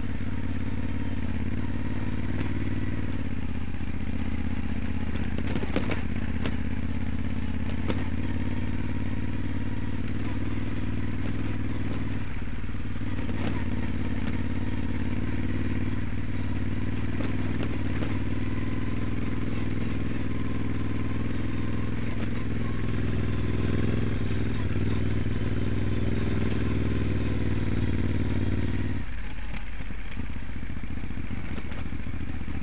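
Moto Guzzi Stelvio's transverse V-twin engine running steadily under light throttle over rough gravel. The engine note shifts a few times and drops sharply near the end, with a couple of sharp knocks about six and eight seconds in.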